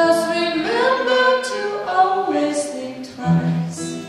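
Live acoustic duo: a woman singing a soulful melody into a microphone over strummed acoustic guitar, the sung notes gliding and held between breaks.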